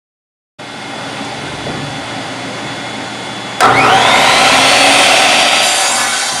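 A vertical panel saw's motor switches on about halfway through, its whine rising quickly as it spins up, then running at full speed over a steady background hum.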